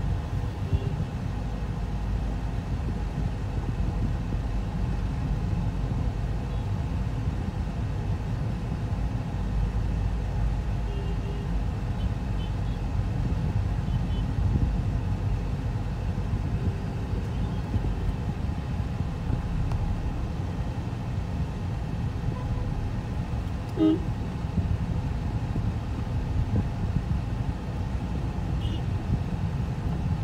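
Steady low rumble of a car moving in slow traffic, heard from inside the cabin, with brief horn toots from other vehicles now and then.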